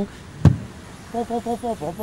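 A single loud stamp thud, the sound effect of a rubber stamp slamming down, about half a second in. A voice starts speaking about a second later.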